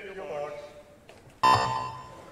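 A brief voice call, then about one and a half seconds in the electronic start signal of a swimming race: a loud, steady, high beep lasting about half a second that sends the swimmers off the blocks.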